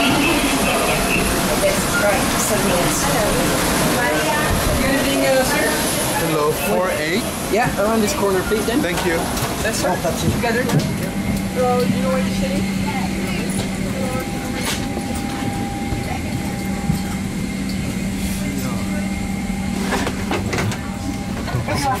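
Passengers chattering while boarding a Boeing 767 through the jet bridge. From about halfway, a steady low hum from the parked airliner's cabin systems runs under lighter talk, and a cabin-crew announcement over the public-address system begins at the very end.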